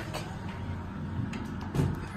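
Steady low hum of an elevator car standing at a floor, with a few faint clicks and one short thump near the end.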